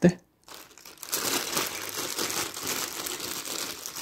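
Thin clear plastic packaging crinkling as it is handled and opened, an irregular crackle starting about half a second in.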